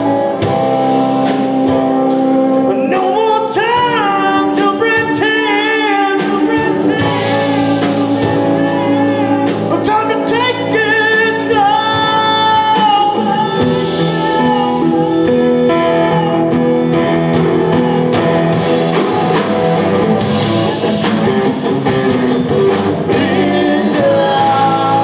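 A live band playing a blues number on electric guitars and drum kit, with a lead melody of bending notes in the first half.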